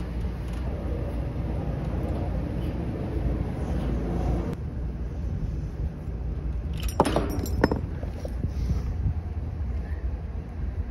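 A small tubing cutter is turned around a copper suction line, giving a faint scraping over a steady low rumble. About seven seconds in come a few sharp metallic clinks with a short ring.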